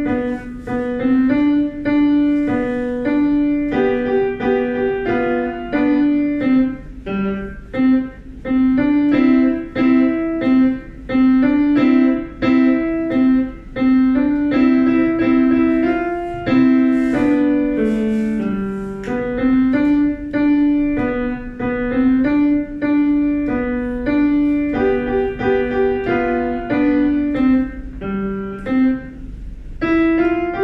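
Grand piano played solo: a simple tune of short, evenly paced notes in the middle register, played without a break.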